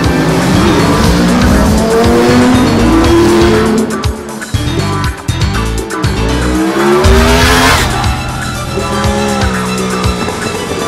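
Yamaha R1 superbikes' crossplane inline-four engines revving and accelerating away. The pitch climbs over the first few seconds, eases off in the middle, then climbs again near the end, over background music.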